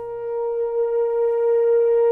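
French horn holding one long high note that swells louder over the first second and a half, with a low sustained note from the ensemble underneath fading out within the first second.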